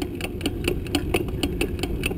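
A bicycle rolling over pavement: a steady low rumble of wind and tyre noise with a quick, uneven rattle of clicks, about four or five a second, from the bike and its camera mount.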